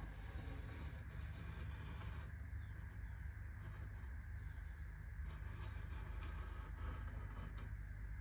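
Steady low background rumble with a faint hiss and no distinct event.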